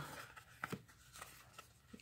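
Faint rustle and a few light flicks of baseball cards being slid and flipped through by hand.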